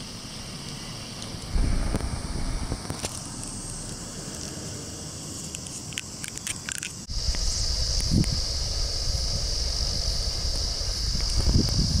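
Outdoor ambience with wind rumbling on the microphone. A short run of clicks comes just before seven seconds in, and from there a steady high-pitched buzz runs under the louder wind rumble.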